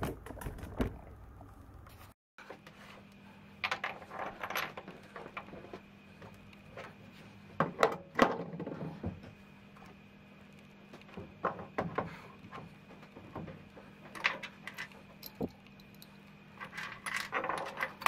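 Metal parts of a Logan lathe's tailstock clamp, the threaded bolt, clamp block and tailstock, clinking and scraping as they are handled and fitted together. The clinks come in short clusters every few seconds over a faint steady hum.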